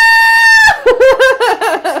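A woman's held, high-pitched mock scream that cuts off under a second in, followed at once by a quick burst of laughter.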